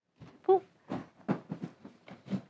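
A brief pitched vocal sound about half a second in, then footsteps in sandals on a hard floor: a run of short knocks about a third of a second apart.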